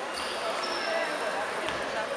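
Table tennis ball tapping once, faintly, near the end, over a steady babble of voices in a sports hall.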